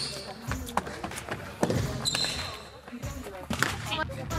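Sneakers thumping and squeaking on a wooden gym floor in a series of irregular impacts, with a couple of short high squeaks, among voices in the gym.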